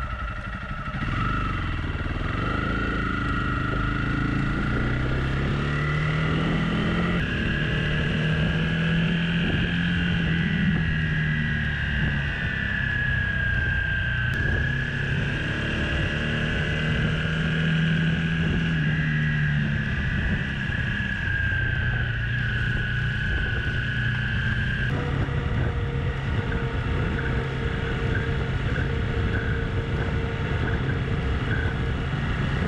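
Single-cylinder engine of a Honda CRF 300 Rally motorcycle running on the road, its pitch rising and falling gently with speed, with wind rush over it. The sound changes abruptly twice, at about 7 s and near 25 s.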